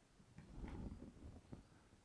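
Near silence, with faint handling noise from a clear plastic bottle turned in the hand while a line is drawn on it with a paint marker, and a faint tick about a second and a half in.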